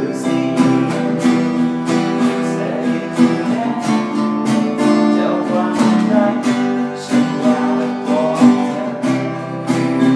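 Acoustic guitar strummed in a steady rhythm, a few strums a second, with the chord changing every few seconds.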